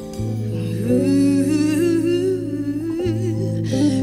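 A woman's voice humming or singing a wordless, wavering melody over held electric keyboard chords; the voice comes in about a second in and swells on a rising note at the end.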